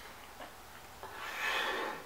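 A person's breath out, a soft, breathy exasperated sigh that starts about a second in, with the hands pressed over the face.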